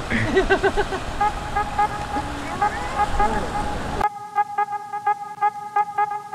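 Outdoor noise with a few voices at first, while background music with a repeating electronic note pattern fades in underneath; about four seconds in, the outdoor sound cuts off and the music plays alone.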